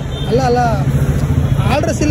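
Man's voice talking over steady road-traffic noise.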